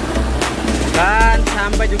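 Background music with a steady beat and held bass notes; a voice comes in about halfway through.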